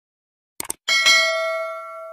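Subscribe-animation sound effect: a quick double mouse click, then a notification bell ding about a second in that rings on and fades away.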